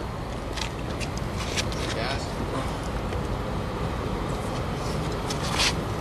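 Outdoor parking-lot ambience: a steady low rumble with scattered short rustling noises, the strongest near the end, and indistinct voices in the background.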